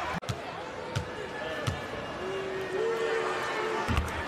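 A basketball bouncing on a hardwood court, a few sharp bounces in the first two seconds, over steady arena crowd noise. A held tone runs through the second half, and the sound cuts out briefly just after the start.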